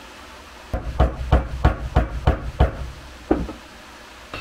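A mallet tapping a bushing into the pivot of a steel UTV front A-arm: a quick run of about a dozen dull taps over two seconds, then one more a little later.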